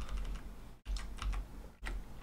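Computer keyboard keys being pressed in quick succession, several light clicks a second, over a steady low hum. The sound cuts out briefly twice.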